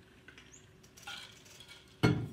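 Faint, indistinct murmuring of students' voices in a quiet room, with a small high chirp early on.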